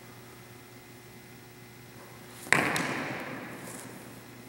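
A single sharp clash of broadsword blades about two and a half seconds in, ringing out and echoing for over a second in the hall.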